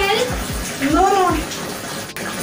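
Persian kitten meowing twice while being bathed: two drawn-out meows that rise then fall in pitch, one at the very start and one about a second in. Background music with a steady low beat runs underneath.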